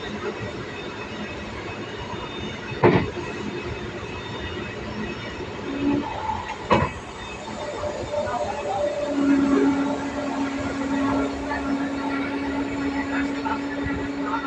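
Running noise of a moving train heard from inside the carriage, with two sharp knocks about three and seven seconds in. A steady low whine sets in about nine seconds in and holds.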